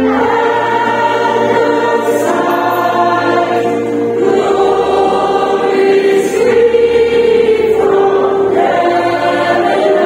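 Mixed choir of children and adults singing a Christmas carol in slow, long held notes that change every second or two, with a low sustained bass note underneath.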